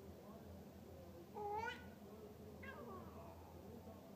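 A baby's short high-pitched squeal about one and a half seconds in, followed about a second later by a fainter second squeal.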